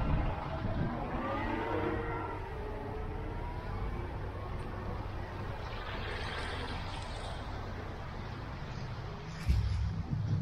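A car driving slowly on a wet, slushy street, with a steady low rumble of engine and tyre noise. Just before the end, a louder low rumble comes in suddenly.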